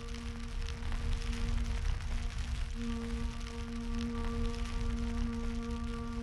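Quiet opening of a vocals-only nasheed: a steady, held vocal drone on one low note, with a fainter octave above, over an even rain-like hiss with faint crackle. The drone grows stronger about three seconds in.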